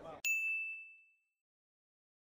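A single bright ding of a quiz timer, signalling that the countdown time is up. It rings out and fades away within about a second.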